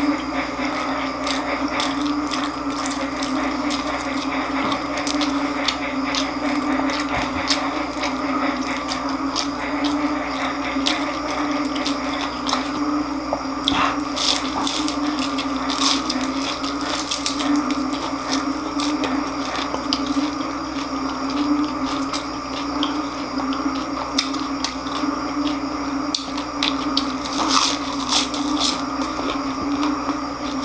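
Close-up crunching and wet chewing of crispy deep-fried pork intestine (chicharon bulaklak), a scatter of sharp crackles, over a steady low hum.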